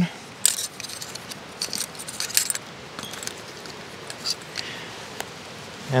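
A spoon stirring and scraping in a bowl, working oil, sweetener and crushed spruce tips into a dry almond-flour bannock mix: short, scattered scrapes and clicks with quiet between them.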